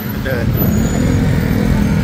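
Road traffic: car and motor scooter engines running close by, a steady low hum that grows louder about half a second in.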